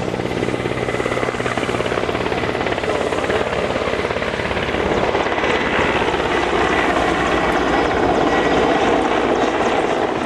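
Helicopter flying overhead: the rapid, steady beat of its rotor blades, growing a little louder in the second half.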